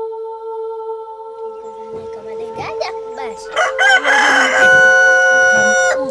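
A rooster crowing once, about three and a half seconds in: a rough rising start, then a long held note. A steady sustained music tone runs underneath.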